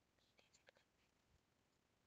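Near silence with a few faint clicks in the first second, from a computer keyboard as numbers are typed into a spreadsheet.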